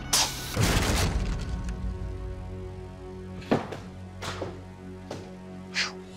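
A hard strike as the strength-test machine drives a clamped blade into sugar cane, followed by a longer crashing chop through the cane. Later come four shorter sharp hits, all over background music with sustained tones.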